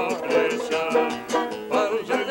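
Long-neck five-string banjo and acoustic guitar playing a lively folk dance tune together, with a man's voice singing along.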